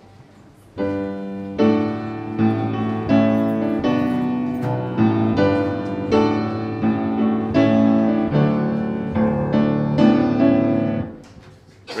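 Piano playing a hymn introduction as a series of sustained chords. It starts about a second in and stops about a second before singing begins.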